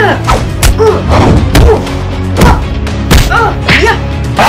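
Fight sound effects: a run of punch and hit thuds, about two a second, over a steady action music track, with short pitched cries between some of the hits.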